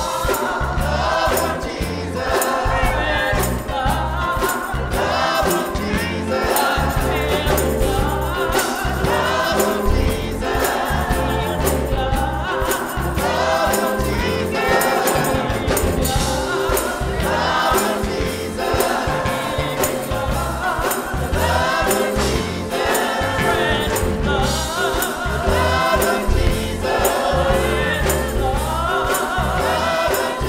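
Live gospel choir singing, with lead singers on handheld microphones, over instrumental backing with a steady beat.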